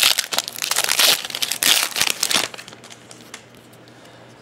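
Foil wrapper of a football trading-card pack crinkling and tearing as the pack is opened, a dense crackle of sharp clicks that stops about two and a half seconds in.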